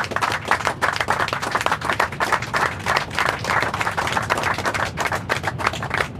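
A small group of people applauding, many quick overlapping hand claps.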